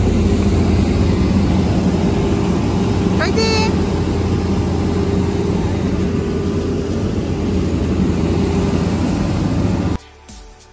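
Loud, steady apron noise from a parked jet airliner and its ground equipment: a continuous hum with low steady tones, with wind noise on the microphone. A short rising pitched sound, like a call, cuts through about three seconds in.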